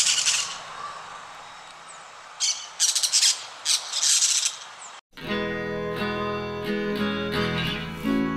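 Parakeet squawks: harsh, high bursts of calling at the start and a quick run of several more from about two and a half to four and a half seconds, over faint outdoor hiss. About five seconds in, the sound cuts off abruptly and strummed acoustic guitar music begins.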